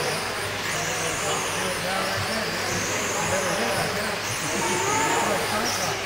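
1/10-scale RC sprint car motors whining, the pitch rising and falling about every two seconds as the cars run down the straights and slow for the turns of a dirt oval, over indistinct background chatter.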